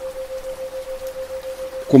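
A steady 528 Hz tone pulsing on and off about seven times a second as a 7 Hz isochronic tone, over soft rain noise.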